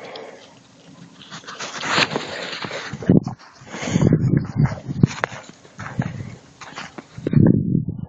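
A dog making short vocal noises close to the microphone, in irregular bursts, loudest near the end.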